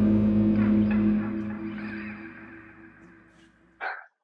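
A band's last chord on electric guitar and bass through amplifiers ringing out and fading away over about three seconds.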